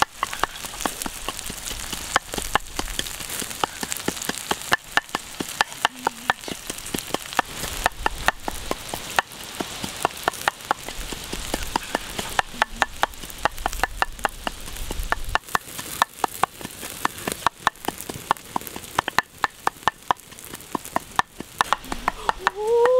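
Whole shrimp sizzling on a flat stone heated over a wood fire: a steady hiss with many sharp pops and crackles scattered through it.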